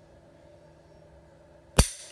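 A single sharp dry-fire click from a pistol near the end, the trigger breaking with no cartridge chambered. Otherwise quiet room tone.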